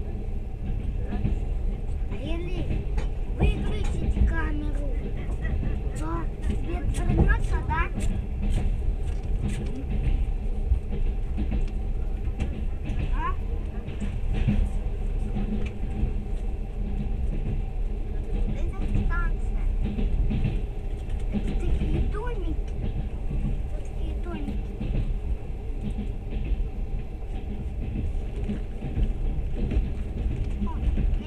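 Moving train heard from inside a carriage: a steady low rumble of wheels running on the rails, with brief higher whines and clicks over it, most of them in the first ten seconds.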